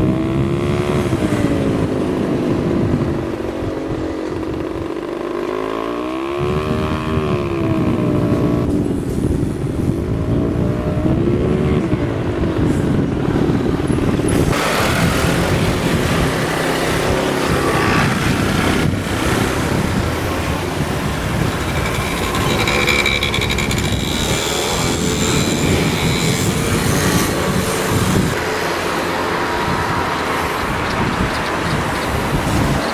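A motor engine whose pitch rises and falls in smooth sweeps over the first dozen seconds, then a louder, steady rush of noise from about 14 seconds in.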